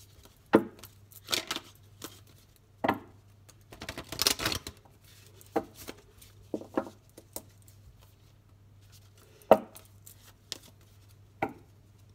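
A deck of oracle cards being shuffled and handled by hand, giving irregular, separate taps and knocks with a short rustle of the cards about four seconds in.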